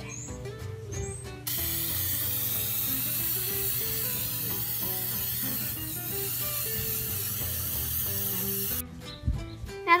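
Aerosol can of acrylic enamel spraying in one long continuous hiss, starting about a second and a half in and cutting off near the end, over background music.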